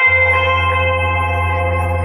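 Live band music: a held, ringing chord over a deep steady bass note, with no singing yet.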